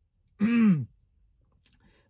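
A man's single short wordless vocal sound, about half a second long, with its pitch rising and then falling.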